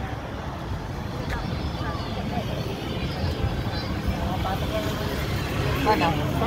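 Steady roadside traffic rumble with a few faint voices of people in the background.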